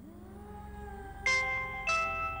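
Mobile phone ringing with a marimba-like ringtone: bright struck, ringing notes begin about a second in, a new one about every 0.6 s. A faint rising tone comes before them.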